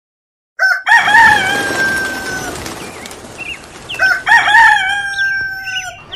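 Rooster crowing twice, each crow a short rising start and then a long held note.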